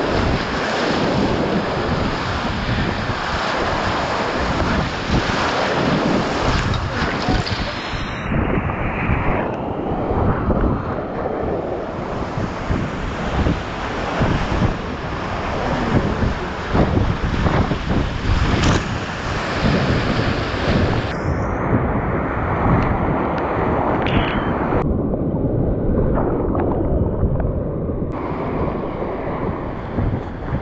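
Large whitewater rapids rushing loudly and steadily around a kayak, heard from right on the water.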